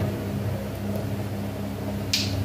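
Steady low electrical hum with a faint even hiss: room tone in a pause between words.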